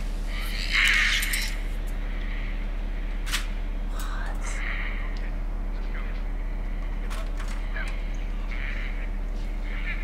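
Faint, muffled voices from a TV episode's soundtrack over a steady low electrical hum, with the loudest stretch about a second in.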